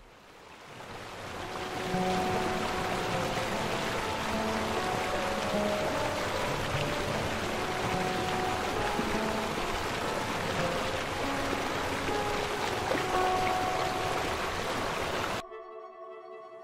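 Rushing stream water fades in over about two seconds and runs steadily, with soft, scattered music notes over it. It cuts off suddenly about a second before the end.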